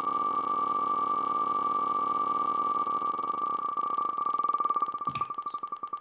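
Online prize-wheel spinner sound effect: rapid ticking that slows and spreads out over the last couple of seconds as the wheel winds down, over a steady electronic tone.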